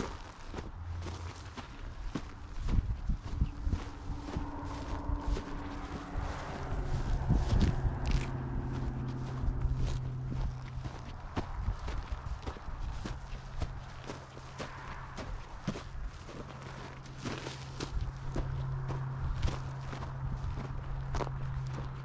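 Footsteps crunching through dry grass and dirt while walking up a slope, irregular and close to the microphone. A steady low hum joins about six seconds in and continues under the steps.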